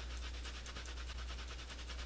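Quick, even rubbing of a cloth wipe against bare skin as lipstick swatches are wiped off a forearm, faint, over a low steady hum.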